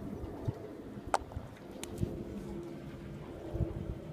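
Quiet lakeside outdoor ambience with faint bird calls over a low steady hum. There is a sharp click about a second in and a few soft knocks.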